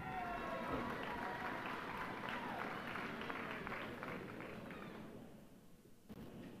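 Audience applauding, with a few voices calling out over it; the clapping dies away about five seconds in.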